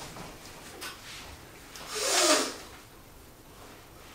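A person's loud, breathy sigh about halfway through, falling in pitch. Faint movement noise comes before and after it.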